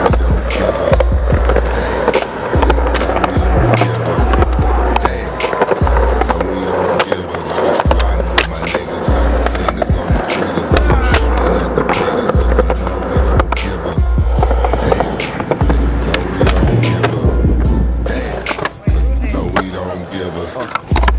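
Skateboard wheels rolling on concrete with sharp clacks of board pops and landings, over a hip hop beat with a heavy, regular bass line.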